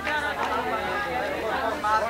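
Overlapping voices: several people talking and calling out at once, with no single clear speaker.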